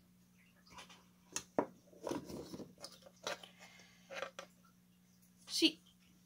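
Irregular clicks, knocks and scrapes of a graphics card's plastic cooler being handled and pressed against the card, as it is lined up with the screw holes.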